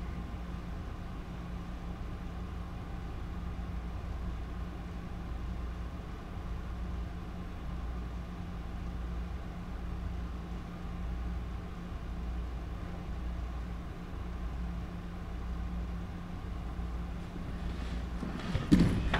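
Room tone during a moment of silence: a steady low hum under faint background noise.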